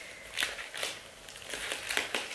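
Scrapbook pages thick with glued-on clippings being turned and handled: a few short, separate rustles of paper.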